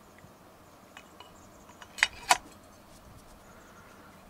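A few faint clicks, then two sharp metallic clicks close together about two seconds in, as the opened 12-volt solenoid battery disconnect switch and its parts are handled.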